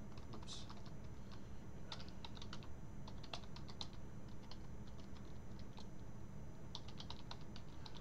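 Typing on a computer keyboard: quick, irregular keystrokes over a faint steady hum.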